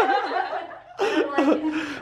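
People laughing, in two stretches with a short lull a little before the middle.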